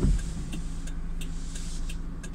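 Car engine idling as a steady low hum heard inside the cabin, with a windscreen wiper sweeping across the glass right at the start and faint regular ticking.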